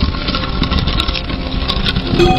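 A loud, steady rumbling intro sound effect with ringing tones over it.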